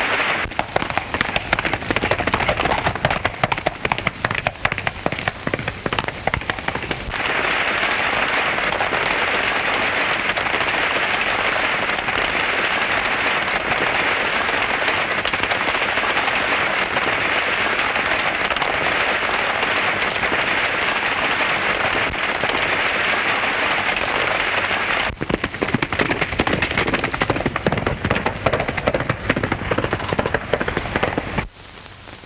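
Hoofbeats of galloping horses and a runaway stagecoach: dense clattering of hooves, giving way about seven seconds in to a steady rushing rattle, which breaks back into clattering hoofbeats near the end.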